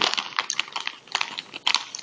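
Plastic snack bag of popcorn chips crinkling as it is handled and turned, an irregular run of sharp crackles.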